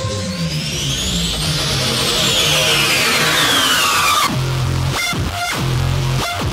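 Electronic dance music. A sweep rises and then falls over the first four seconds, then the beat drops in with heavy bass and a steady rhythm.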